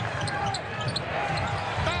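Live basketball game sound: a ball bouncing on a hardwood court amid arena background noise and faint voices.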